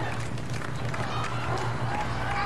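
A woman's muffled voice through a mouth gag, over a steady low hum.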